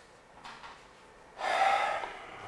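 Chalk squeaking on a blackboard: one short, high, steady squeal of about half a second near the end, after a quiet stretch.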